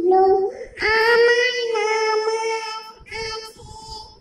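A young girl singing an Islamic devotional song (a Bangla gojol/naat). She sings a short phrase, then holds one long note through the middle, then a shorter phrase near the end.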